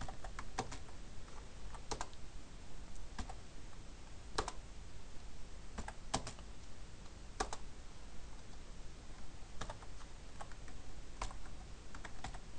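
Computer keyboard typing: sparse, uneven keystrokes, sometimes two in quick succession, with short pauses between them.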